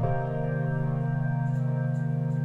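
The closing sustained chord of a lo-fi beat built from randomly chosen synth presets. It is an organ-like keyboard chord held with a fast, even pulsing and no drums under it, changing chord right at the start.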